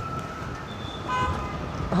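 A brief high-pitched toot from a horn or alarm sounds about a second in, over a low steady outdoor rumble.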